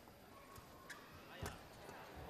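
Badminton racket striking a shuttlecock during a rally: a sharp hit about one and a half seconds in, with a lighter tick just before it, over faint arena background.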